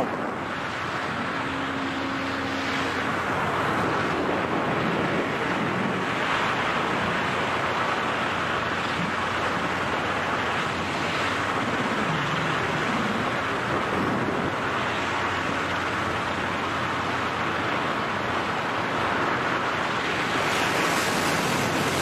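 Steady rush of air on a skydiving camera's microphone during freefall: a continuous, even wind roar with no pauses.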